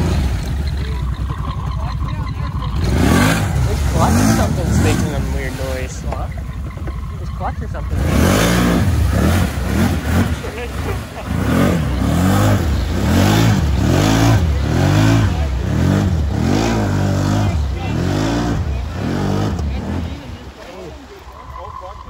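Can-Am Renegade 1000 XMR ATV's V-twin engine revving in repeated surges, rising and falling about once a second, as the machine is worked through deep lake water with its tyres churning.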